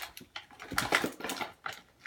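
Plastic-windowed toy box packaging being opened by hand: irregular bursts of rustling and crinkling.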